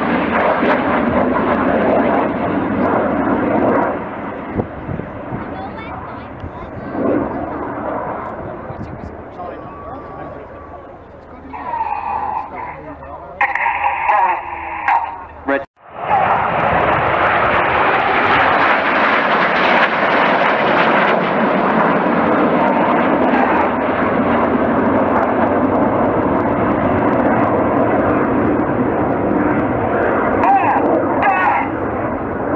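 Formation of Red Arrows BAE Hawk T1 jets passing overhead, their turbofan engines making a loud, steady jet noise. The noise fades over the first few seconds, then after a sudden break about halfway through it comes back loud and holds.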